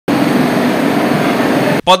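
Railway platform ambience: a loud, steady rushing noise with a murmur of voices under it, which cuts off suddenly near the end.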